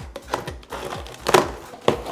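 Cardboard box being unpacked: plastic strapping cut and the flaps pulled apart, with three sharp snaps and crinkling of cardboard and plastic wrap. Background music plays underneath.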